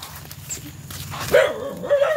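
A dog vocalizing: one drawn-out, wavering call of about a second, beginning a little past the middle, over a low steady background hum.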